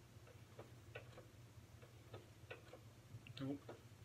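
Near silence with faint, regular ticking about twice a second over a low steady hum.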